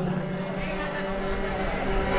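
Harmonium holding a steady low drone, with a low rumble of noise joining about half a second in.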